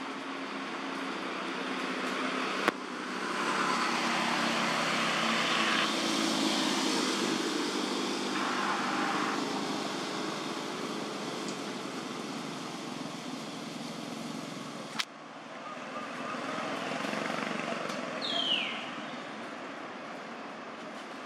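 Steady outdoor background noise with a low rumble that swells a few seconds in and eases later, like distant traffic. There is a sharp click about three seconds in and another about three-quarters of the way through, and a short falling chirp near the end.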